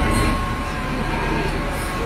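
Heavy diesel machinery running: a steady mechanical noise with a low hum and a faint thin whine through the first second and a half.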